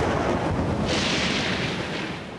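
Thunderstorm sound effect: a rumble of thunder over rain and wind, with a hissing rush that swells about a second in and then dies down.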